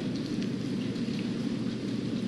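Steady hiss of room tone picked up through the courtroom microphones, with no speech.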